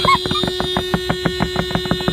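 Car horn held down, sounding one long steady note, with a fast, even ticking underneath.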